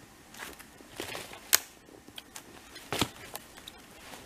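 Footsteps crunching in snow, a few irregular steps, with a sharp crack about one and a half seconds in, the loudest moment.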